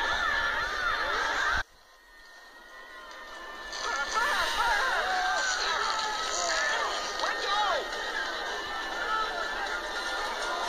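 Cartoon soundtrack of several overlapping voices, heard through a TV speaker. It cuts out suddenly under two seconds in and fades back in with more voices over the next couple of seconds.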